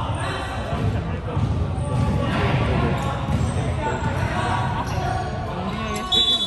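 A basketball bouncing on a hardwood gym floor, with indistinct voices carrying in the large hall.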